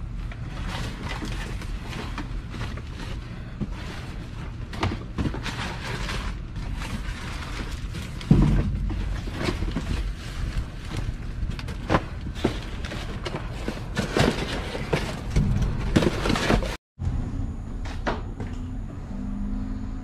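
Rummaging through cardboard boxes and plastic bags in a metal dumpster: repeated rustling, scraping and knocks, with one heavy thump about eight seconds in. Music plays underneath, and the sound cuts out abruptly for a moment near the end.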